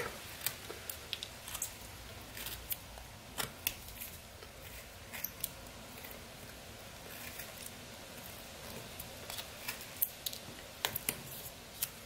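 Small pocket-knife blade paring thin cuts from an eastern white pine block: short, faint snicks of blade through wood at irregular intervals.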